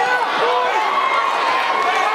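Crowd of fight spectators shouting and yelling, many voices overlapping.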